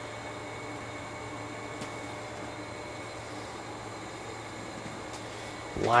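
Steady low electrical hum with a faint hiss from the Eimac 4-125A tube modulator as its high voltage comes on. There is no relay clank, because the high voltage is switched through a solid-state relay.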